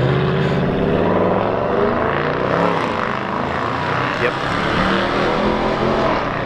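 A car engine revving hard under heavy acceleration as a driver floors it, its pitch rising and falling several times.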